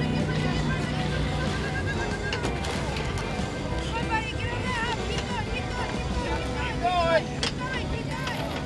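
Mixed voices of a crowd of onlookers, with several wavering high-pitched calls between about four and seven seconds in.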